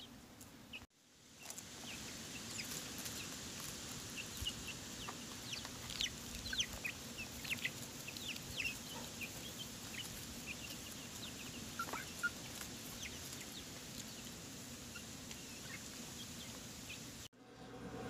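Young chickens calling as they forage: scattered short, high falling chirps, faint overall, over a faint steady low hum.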